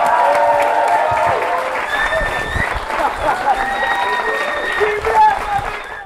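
Audience applauding at the end of a stand-up set, with voices from the crowd over the clapping.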